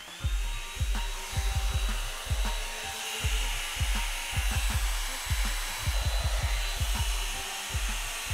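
Revlon One Step dryer brush blowing on its cool setting: a steady rush of air with a thin high whine, switching off near the end. Irregular low thumps run under it.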